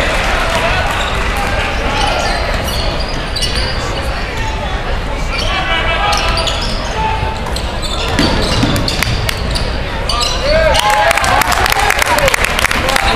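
Basketball dribbled on a hardwood gym floor, the bounces heard among the chatter of the crowd in the bleachers, in a large echoing gym. Near the end, as players break into a run, sneakers squeak on the court.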